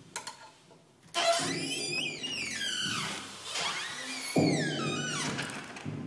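Electronic sound-art piece played through a pair of loudspeakers: a dense layer of falling, whistle-like pitch glides starts suddenly about a second in, and a low, noisy band cuts in abruptly past the middle.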